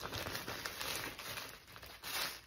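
Plastic poly clothing bag crinkling as hands handle it, open it and reach inside; the crinkling thins out near the end.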